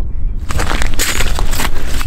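Crunching footsteps on snow-crusted ice, starting about half a second in, over wind rumbling on the microphone.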